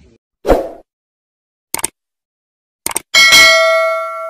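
Subscribe-button animation sound effects: a short thump about half a second in, two quick clicks, then a bright notification-bell ding that is the loudest sound and rings on, slowly fading.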